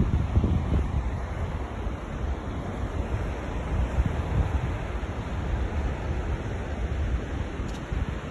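Wind buffeting the phone's microphone in uneven gusts over a steady hiss of surf breaking along the beach.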